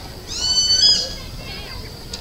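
A single high-pitched bird call, held steady for well under a second just after the start, followed by a few short weaker chirps, over a steady faint high whine.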